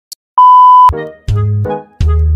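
A colour-bar test-pattern tone: a steady 1 kHz beep lasting about half a second, cut off abruptly. Music with heavy bass notes starts right after it, about a second in.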